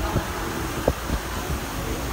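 Large outdoor cooling fan running with a steady rushing hiss, with a single short knock about a second in.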